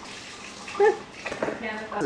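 Brief laughing and voice fragments over a steady rushing hiss, the voice coming in short bursts from about a second in.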